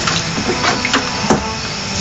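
A few light knocks of a hand on the wooden cover piece over the digital piano's hinge, over a steady low hum and hiss.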